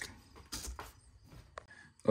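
Quiet room tone with faint handling sounds: a soft knock or rustle about half a second in.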